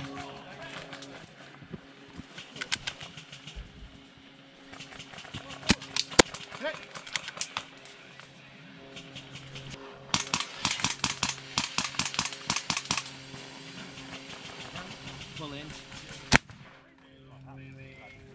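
Airsoft gunfire: scattered single shots, then a dense rattling burst of rapid fire from about ten to thirteen seconds in. Near the end comes a single sharp bang, the airsoft grenade that takes the player out.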